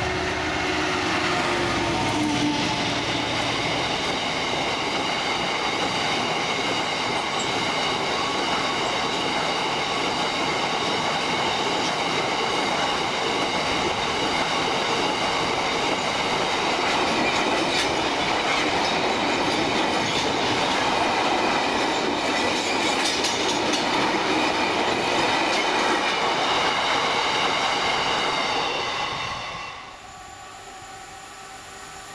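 A Class 59 diesel locomotive, with its EMD two-stroke engine, passes in the first couple of seconds. A long rake of box wagons follows, rolling past with a steady rumble, a high steady wheel squeal and occasional clicks over the rail joints. The sound cuts off just before the end.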